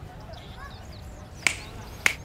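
A sharp finger snap about one and a half seconds in, with a second snap right at the end, over a quiet background.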